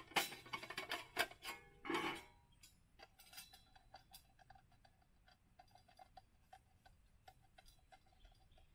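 Thin metal parts of a small folding camp stove clattering and clicking as they are handled and fitted together: a busy clatter in the first two seconds, then a run of light metallic ticks with a faint ring.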